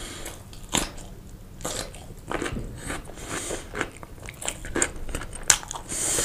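Close-miked eating: crisp crunching and wet chewing of a pickled gherkin, many sharp crackly snaps in quick succession, with a bite into a large sausage near the end.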